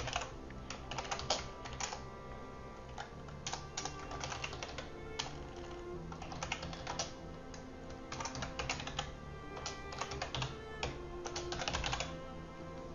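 Computer keyboard typing in irregular runs of keystrokes with short pauses, over soft background music with sustained notes.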